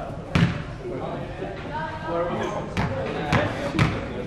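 Basketball bouncing on a sports-hall floor: one loud bounce about a third of a second in, then three bounces about half a second apart near the end.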